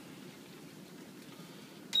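Low, steady background noise of a ship's interior, then a single short high beep near the end as a button on the fire indicator panel is pressed.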